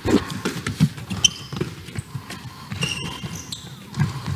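Handballs bouncing and players' shoes stepping and squeaking on an indoor court floor: a scatter of short knocks and thuds with a few brief high squeaks.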